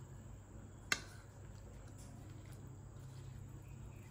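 A metal spoon clinks once against a ceramic mixing bowl about a second in, a sharp click with a short ring, while tuna and chopped vegetables are stirred. A faint low steady hum runs underneath.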